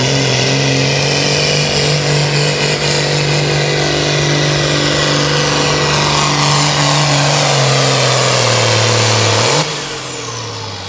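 John Deere altered farm tractor's turbocharged diesel engine running flat out under load as it pulls a weight sled, with a high whine over the engine note that slowly drops in pitch. Just before the end the throttle is shut and the engine sound falls off suddenly, the whine winding down, marking the end of the pull.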